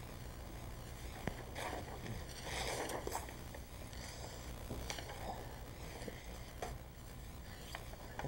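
Sheets of paper being handled and shifted, soft irregular rustling with a few small clicks, over a steady low hum.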